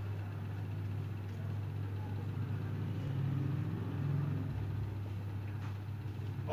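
A steady low hum throughout, with no distinct scraping or clicks standing out.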